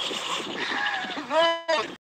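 Audio of a fishing clip played back on a phone: outdoor background hiss with voices, and a loud, high, drawn-out cry about a second and a half in; the sound then cuts off abruptly.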